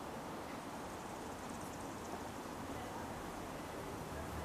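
Quiet outdoor background: a faint, steady hiss with no distinct events.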